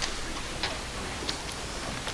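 Quiet meeting-room tone with a few faint, light ticks about two-thirds of a second apart.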